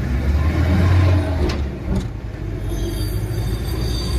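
Engine and road rumble heard from inside the cab of a moving Mahindra utility vehicle, loudest about a second in.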